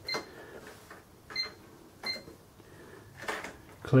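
Sam4S NR-510R cash register beeping as its keys are pressed: three short, high beeps spread over the first two seconds or so, then a soft key click about three seconds in.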